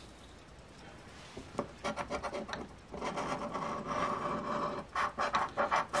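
A scratch-off lottery ticket being scratched with a round scratcher tool, rubbing the coating off the winning-numbers row in rapid short strokes. It starts after a quiet second or so and grows busier and louder in the second half.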